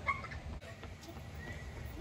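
Quiet outdoor background: a low, steady hum with a few faint, brief sounds over it.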